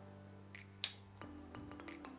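Soft background music with one sharp click a little under a second in and a fainter click just before it, from the aluminium tripod's legs as they are moved to their most upright angle stage.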